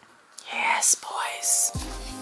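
A breathy whispered voice with two hissing sounds, heard during a lull in the background pop music. The music comes back in with a heavy bass near the end.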